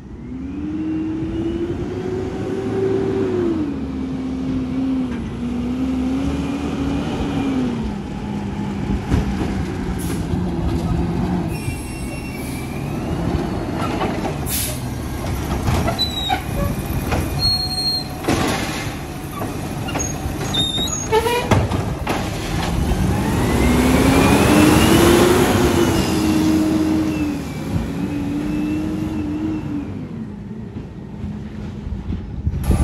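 Mack LR automated side-loader garbage truck running on natural gas. Its engine revs up and down as it moves in. In the middle the lifting arm works a cart, with sharp knocks and short high squeals. Near the end the engine revs loudest as the truck pulls away.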